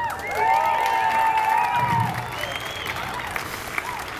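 Crowd clapping and cheering, with several voices whooping. The whoops thin out after about two seconds while the clapping goes on.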